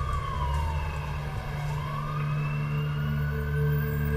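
Emergency vehicle siren in a slow wail: its pitch falls gradually through the first half and then climbs again, over a low steady hum.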